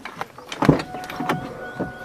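A car door opening with a loud clunk, followed by a few lighter knocks as someone reaches inside. A steady tone comes in just after the first clunk and holds.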